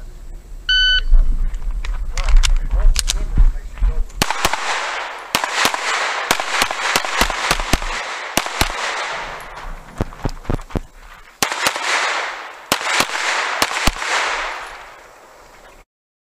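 A shot-timer beep starts the course of fire, then a red-dot handgun fires many shots in quick pairs and strings, each with a rolling echo, with short gaps between strings. The shooting cuts off abruptly near the end.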